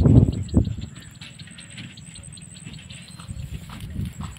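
Low rumbling wind buffeting and handling noise on a handheld phone's microphone, loudest in two surges in the first half second. Faint, rapid high ticking runs behind it.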